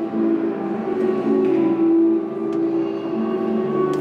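Live harp music, with low notes ringing and held beneath quieter higher plucked notes.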